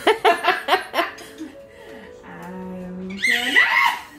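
A toddler laughing in a quick run of giggles, then, after a brief steady note held by an adult's voice, breaking into a loud rising squeal of laughter near the end as he is tickled.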